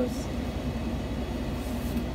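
Vehicle engine idling, heard from inside the cabin as a steady low rumble with a faint constant hum.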